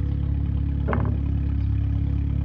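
A steady low engine hum, like a motor vehicle idling close by, with one brief short sound about a second in.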